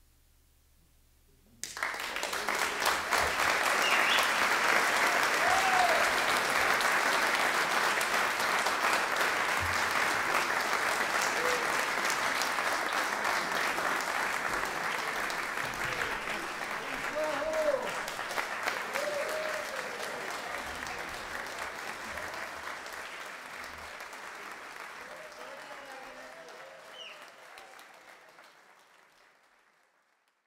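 Audience applauding, starting suddenly about two seconds in after near silence, with a few voices calling out over the clapping; the applause fades away over the last several seconds.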